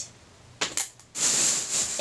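Handling noise as clothing and shopping items are put aside and the next one picked up: a few light clicks, then about a second of rustling near the end.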